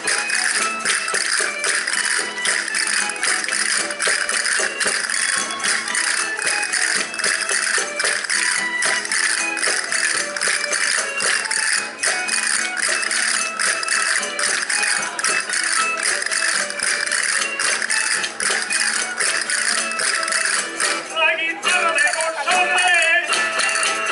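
Live folk dance music with a dense, fast rattling clicking of percussion running over it. A singing voice comes in about a second before the end.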